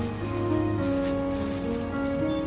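Soft background music with held notes, over the light crinkling of a thin plastic bag being twisted and knotted shut by hand.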